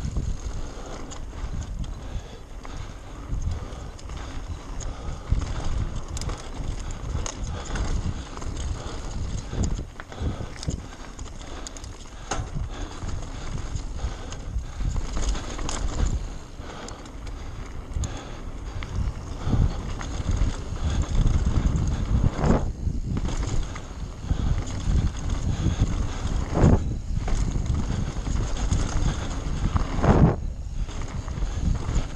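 Mountain bike riding fast down a dry dirt and gravel trail: tyres rolling and crunching over loose stones, the bike rattling and knocking over bumps, with wind buffeting the microphone. A few heavier knocks land in the last third.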